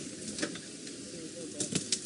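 Open safari vehicle moving slowly off-road through grass and bush: a soft steady rush with a few light knocks and clicks.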